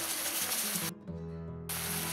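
Onions and peppers sizzling in a frying pan in reducing syrup, over quiet background music. The sizzle cuts out suddenly for under a second about halfway through, leaving only the music, then comes back.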